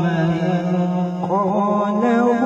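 A man's voice chanting Quran recitation (tilawat) in a drawn-out melodic style. He holds one long wavering note, then starts a new, higher phrase a little over a second in.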